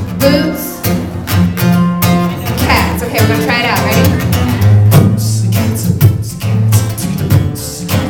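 Acoustic guitar playing steady low notes under a voice making percussive beatbox sounds on the word "boots", with sharp, spitty hisses and clicks.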